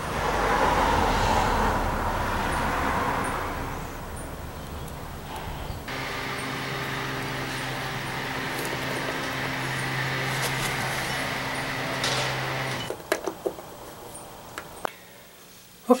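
A motor vehicle's engine: a rising and fading rush of engine and road noise for the first few seconds, then a steady low engine hum held for about seven seconds that stops near the end, with a few small clicks after it.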